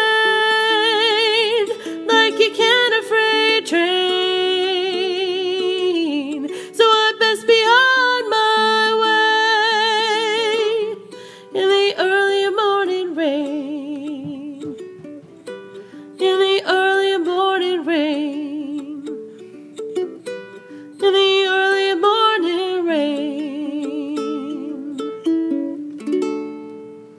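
A woman singing long held notes with vibrato, in phrases a few seconds apart, over a strummed ukulele. The sound fades near the end as the song closes.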